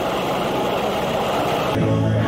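Ultralight trike's engine and propeller running at low power as it rolls along the runway after landing: a steady, even drone. Near the end it cuts off abruptly to a live band playing music.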